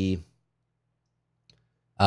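A man's voice trailing off on a word, then a pause holding only a faint low hum and a single faint click about one and a half seconds in.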